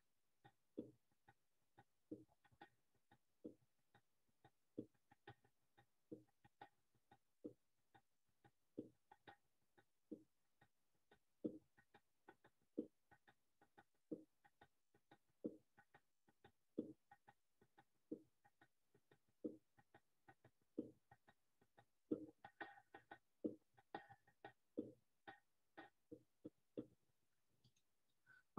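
Recorded playback of a malfouf drum-circle rhythm on bongo-voiced hand drums, heard faintly over a video call: short single strokes about every second and a third, with busier layered strokes coming in near the end. Only the strongest strokes come through and the quieter layers drop out, which the presenter puts down to feedback or microphone placement.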